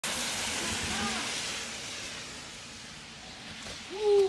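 A car driving past on a wet road, its tyres hissing on the water and fading as it moves away.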